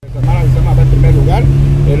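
Voices talking over a loud, steady low hum with rumble beneath it, all starting suddenly.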